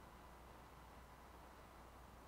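Near silence: a faint steady low hum and hiss, with no music playing.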